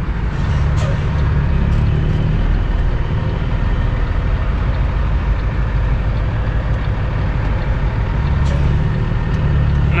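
Cummins ISX diesel engine of a 2008 Kenworth W900L, heard from inside the cab while the truck pulls a light load. The engine's low drone eases off a couple of seconds in and builds again near the end.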